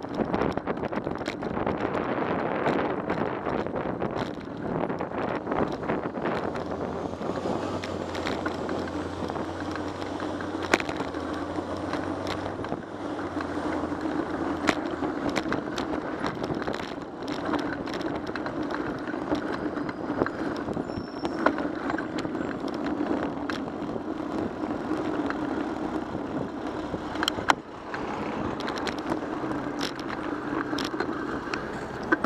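Riding a bicycle through city traffic, heard from a bike-mounted camera: steady wind and road noise with frequent sharp clicks and rattles as the bike goes over bumps in the pavement, and motor traffic around it.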